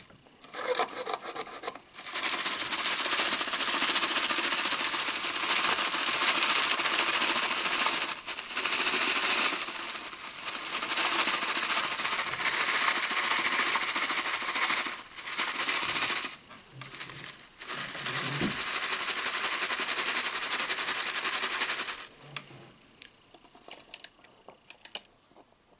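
A large paper drink cup rubbed and scratched right against the microphone, giving a loud, rasping rubbing noise. It starts about two seconds in, breaks off briefly a few times and stops a couple of seconds before the end.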